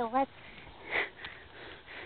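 A short, sharp breath noise close to the microphone about a second in, following the tail of a spoken word, over a faint steady rush.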